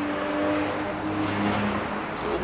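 A car driving by, a steady engine hum with tyre noise.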